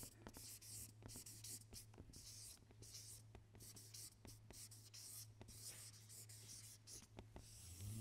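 Marker pen writing a word on a flip-chart pad, a faint run of short scratchy strokes with brief pauses between them, over a low steady hum.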